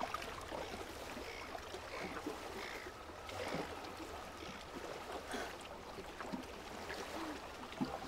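Sea water lapping and splashing gently against a concrete jetty, a steady wash with a low rumble beneath.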